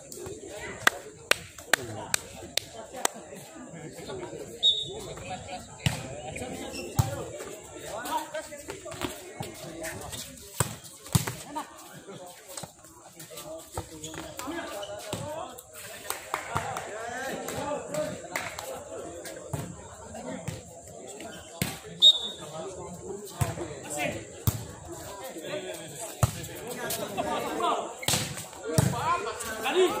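A volleyball being struck during rallies on an outdoor concrete court: repeated sharp smacks of hands on the ball and the ball hitting the ground, a cluster in the first few seconds and a loud one about two-thirds of the way through. Spectators' voices chatter throughout.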